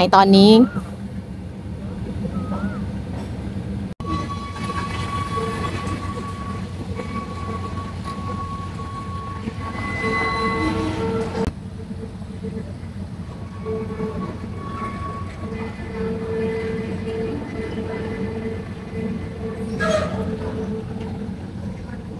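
A diesel locomotive hauling a rake of passenger carriages slowly through the station. There is a steady rumble, with pitched tones that come and go above it, and a brief clatter near the end.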